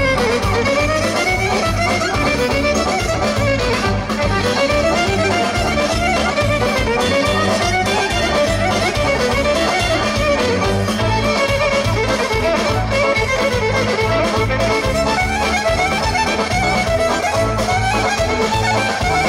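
Bulgarian folk dance music for a horo, a busy melody over a steady beat, playing over outdoor loudspeakers.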